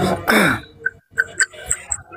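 A person clearing their throat: one short, harsh burst that drops in pitch, followed by a few faint clicks.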